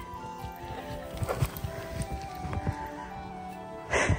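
Soft background music with long held notes, over irregular soft thuds and scuffs of a small dog bounding through deep snow.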